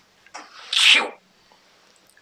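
A woman acting out a sneeze: a brief drawn-in onset, then one sharp, hissy "atchoo".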